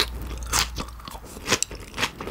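Close-miked chewing of sticky raw beef slices: wet smacking mouth sounds, with a sharp smack about half a second in and two more in quick succession about one and a half seconds in.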